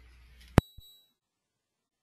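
A single short, high electronic ding with a sharp click at its start, about half a second in; the audio line then cuts to complete silence.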